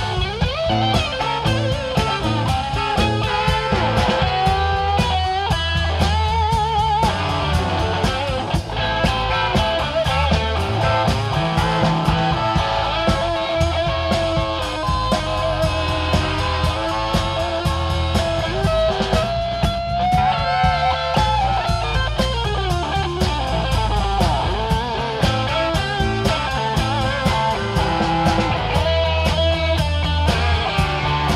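Live rock band playing: an electric guitar leads with wavering, bending notes over bass guitar and a steady drum beat.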